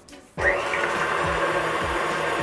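Electric stand mixer switched on about half a second in, then running steadily with its wire whisk whipping double cream in a steel bowl toward soft peaks.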